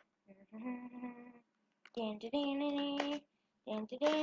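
A female voice humming two long, steady notes, the second higher and louder than the first.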